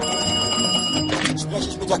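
A cartoon desk telephone's bell ringing over background music: a bright ringing tone through the first second, then a few sharp rattling strikes.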